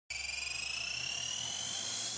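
Synthesized intro riser for a news show's theme: a few high tones gliding slowly upward together over a faint hiss.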